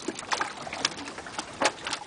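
Live pompano flapping and slapping on a slatted deck and in a crowded water tub as they are handled: a run of irregular wet slaps and knocks, the loudest a little past halfway.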